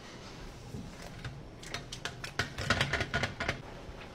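Hard shell of a slipper lobster handled in gloved hands, giving a quick run of irregular dry clicks over a couple of seconds, thickest about two to three and a half seconds in.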